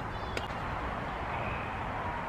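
Steady outdoor background noise with a low rumble, and one short click about half a second in.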